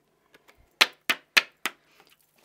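A piece of cardstock tapped four times in quick succession, about three taps a second, knocking the loose embossing powder off the stamped image. Each tap is short and sharp.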